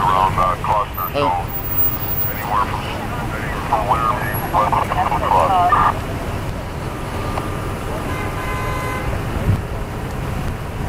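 Indistinct voices of people talking over a steady low rumble of idling vehicles and road traffic. The talking stops about six seconds in, and a faint steady tone follows for a couple of seconds.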